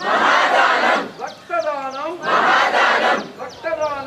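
Marching group of students chanting slogans in call-and-response: a lone leader shouts a line and the whole group shouts back in unison. The group's reply comes at the start and again about halfway, with the leader's call between and near the end.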